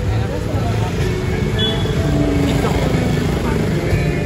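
Street traffic with a motorcycle engine passing, under the voices of people talking nearby.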